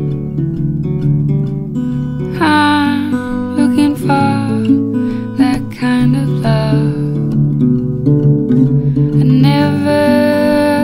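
Slow folk song on acoustic guitar, picked and strummed steadily. A woman's voice sings several drawn-out phrases over it.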